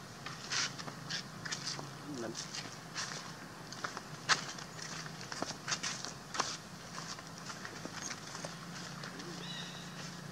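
Irregular crackling clicks and rustles, thickest through the first two-thirds and thinning out near the end, over a steady low hum.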